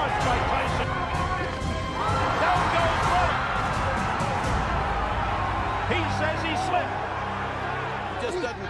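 Fight broadcast audio of a heavyweight boxing bout: arena crowd noise and a ringside commentator's voice, with background music under it. A steady low musical chord comes in about six seconds in.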